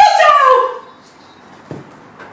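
A woman's high-pitched, drawn-out cry that falls in pitch and dies away within about half a second, followed by quiet and a soft knock near the end.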